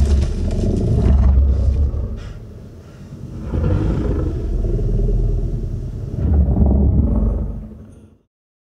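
Designed creature sound effect built from a small piece of metal whirled on a string, slowed down and thickened with bass, heard as deep rumbling swells. It comes in three waves and fades out near the end.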